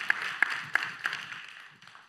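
Congregation applauding in a large room: a hiss of many hands with a few sharper claps about three a second, dying away near the end.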